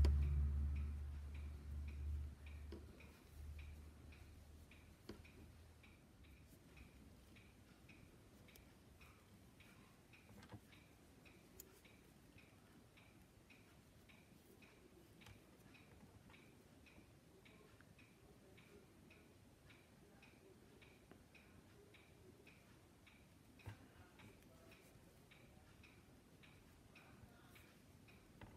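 A clock ticking steadily and faintly, about two ticks a second. A low rumble is loudest at the very start and fades away over the first few seconds.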